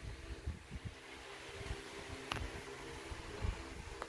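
Faint room tone with a low steady hum, scattered soft low bumps, and one short sharp click a little past halfway.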